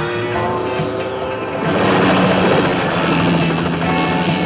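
Film score music with a helicopter's rotor chopping over it; the rotor noise grows louder about two seconds in.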